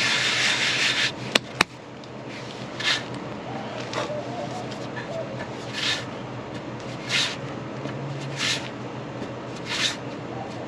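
A palm rolling a cotton-ball-and-wood-ash roll back and forth on a rough wooden board, hand skin rubbing on the wood. There is a long rub at the start and two sharp clicks just after a second in, then short rubbing strokes about every second and a quarter.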